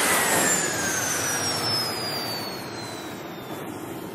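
Cinematic whoosh sound effect for a title animation: a rush of jet-like noise that fades slowly, with a thin whistling tone sliding steadily downward through it.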